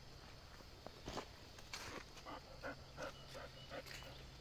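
Faint nature ambience: an animal gives a run of short, repeated calls, about three a second, in the second half, after two brief rustling sounds.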